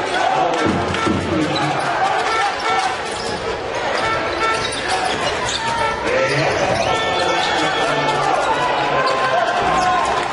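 Basketball being dribbled on a hardwood court, repeated bounces, amid voices and crowd noise in a large arena.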